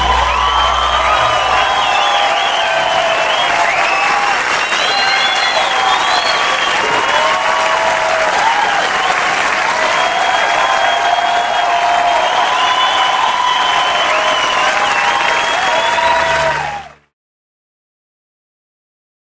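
Audience applauding and cheering after the song ends, with the band's last low note dying away in the first second or so. The applause cuts off suddenly about a second before the end.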